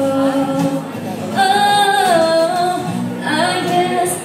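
Two girls singing a song together, accompanied by an acoustic guitar ensemble, with a long held note near the middle that slides down in pitch.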